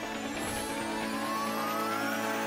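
Station ident sting: a held electronic chord with a tone gliding steadily upward through it, building toward the reveal.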